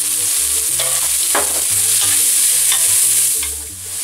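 Sliced leek frying in hot olive oil in a pot, a steady sizzle, with a few short knocks of the leeks being moved about. The sizzle dips briefly near the end.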